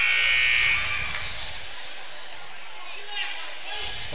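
Gymnasium scoreboard horn sounding a long steady note that cuts off about a second in, the signal ending the break before the fourth quarter. Then the murmur of the crowd in the gym.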